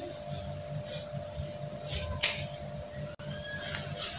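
Scissors cutting through adire silk fabric: a few short, crisp snips about a second apart, the loudest a little past two seconds in, over a faint steady hum.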